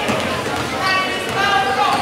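Voices calling out in a large, reverberant gym during a basketball game, with a ball being dribbled on the hardwood court.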